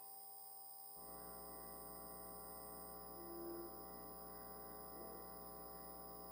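Faint steady electrical mains hum on the sound-system line, with no speech; the low hum comes in fully about a second in.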